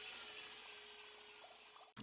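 Faint audio from the anime episode: an even hiss with a faint held tone under it, slowly fading, cut off abruptly near the end.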